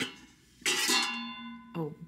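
A stainless-steel plate cover is lifted off a plate: a clink, then a scraping, ringing metallic tone that holds steady for about a second.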